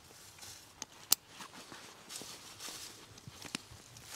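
Plastic buckles on chainsaw chaps clicking shut, a few short sharp clicks with the loudest about a second in, over faint rustling.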